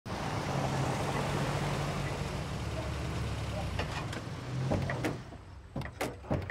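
An SUV pulling up, its engine running with a low steady hum and its tyres rolling over cobblestones; the noise dies away about five seconds in. A few sharp clicks and knocks of a car door follow near the end.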